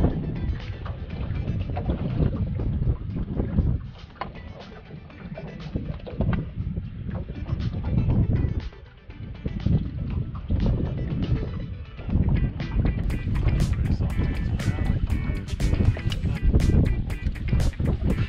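Wind buffeting the microphone over a small boat on open water, under background music. Near the end comes a rapid run of sharp clicks.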